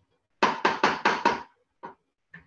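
Five quick knocks in about a second, then one more: a measuring cup being tapped against a mixing bowl to knock out the last of the confectioners' sugar.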